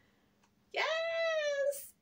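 A woman's drawn-out, high-pitched, excited "yes", held for about a second and sliding slightly down in pitch, almost a squeal.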